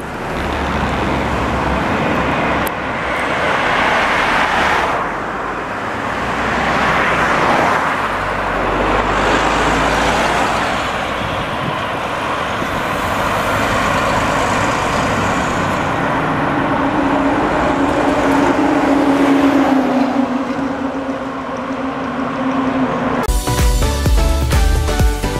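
Road traffic noise: passing vehicles and a running engine, with a steady hum for the last several seconds; music comes in just before the end.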